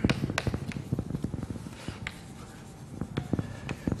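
Chalk writing on a chalkboard: a rapid run of short taps and scratches, thinning out about halfway through and picking up again near the end.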